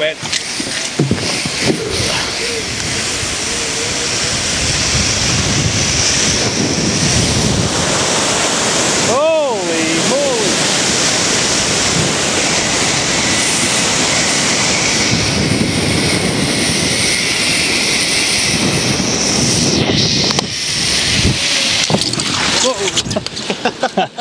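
Zipline ride: a steady rush of wind over the microphone with the trolley running along the steel cable, building over the first few seconds. A short whooping voice rises and falls about nine seconds in, and the rush drops away suddenly about twenty seconds in as the ride comes to its end.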